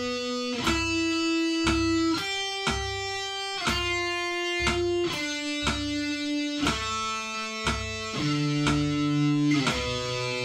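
Electric guitar playing a slow exercise of single picked notes at 60 bpm, each note ringing on as the next one sounds, a new note about every second.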